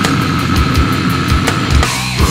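Technical brutal death metal: rapid kick-drum strokes under dense distorted guitar, with one high note held flat across it.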